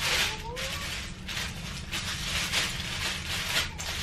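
Crinkly plastic bag rustling in bursts while miniature liquor bottles are pulled out of it, with a short rising tone about half a second in.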